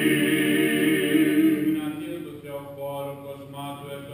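Byzantine chant of the Orthodox Vespers service, sung by several men's voices in a sustained line. The group singing fades out a little before halfway, and one voice carries on more quietly, holding and bending long notes.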